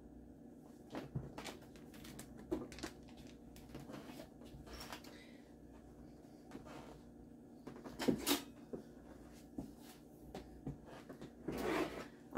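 Faint, scattered knocks and clatters of things being handled and set down in a kitchen, the loudest a short cluster about eight seconds in, over a low steady hum.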